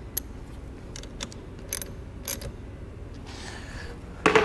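Hand ratchet and socket tightening a nut on a battery terminal: four sharp clicks spread over about two seconds.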